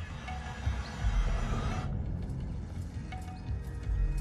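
Film soundtrack music over a low rumble, with a loud hissing rush over the first two seconds that cuts off suddenly, followed by faint ticks.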